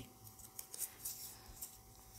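Faint crinkling of a small folded paper slip being unfolded by hand, a few soft crisp ticks.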